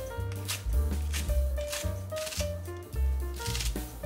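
Background music with a steady bass line and held notes, over kitchen scissors snipping green onions into a stainless steel bowl, short crisp cuts about once a second.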